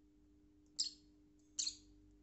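Peach-faced lovebird giving two short, sharp, high-pitched chirps, a little under a second apart.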